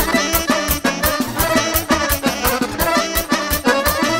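A live Romanian wedding band (taraf) plays a folk dance tune between sung verses, with a fast, steady beat under the melody instruments.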